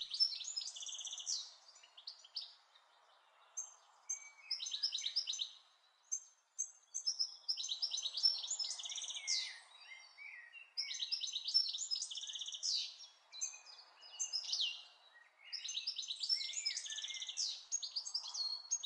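Songbirds singing: quick, high chirping and trilling phrases a second or two long, coming in about five bouts with short pauses between, over faint steady background noise.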